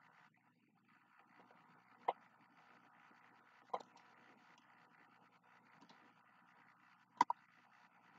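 Quiet room noise broken by four short sharp clicks or taps: one about two seconds in, one near four seconds, and a quick pair near the end.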